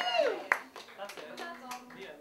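The last held note of a song slides down and stops, then a small audience in a living room claps sparsely, with a few voices.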